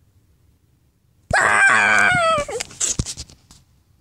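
A loud, high-pitched vocal screech about a second long, its pitch sliding down, voiced as a toy dinosaur's cry. It is followed by a few sharp clicks and knocks as the plastic toy dinosaurs are handled on the carpet.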